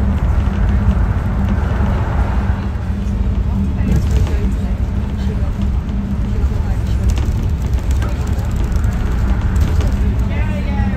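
Inside a bus cruising on a motorway: steady engine and road rumble, low and even throughout.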